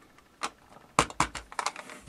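White ABS plastic project enclosures being picked up and handled on a tabletop: one light click about half a second in, then a quick run of sharp plastic clicks and taps through the last second.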